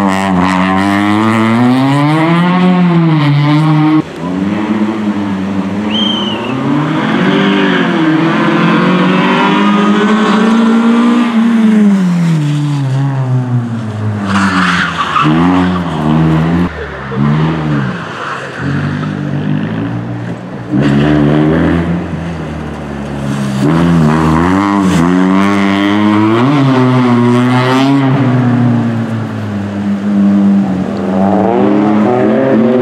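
Peugeot 206 RC's 2.0-litre four-cylinder petrol engine revving hard, its pitch climbing and dropping again and again as it accelerates, shifts and lifts off through a run of corners. The sound breaks off abruptly about four seconds in and picks up again.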